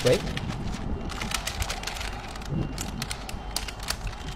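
Parchment paper crinkling and rustling under nitrile-gloved hands, a run of irregular soft clicks and crackles as the paper is handled and folded around the food.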